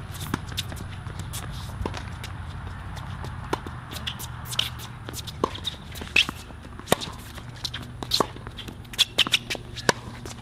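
Tennis rally on a hard court: sharp pops of the racket striking the ball and the ball bouncing, with shoes scuffing on the court surface between shots. The hits come louder and more often in the second half.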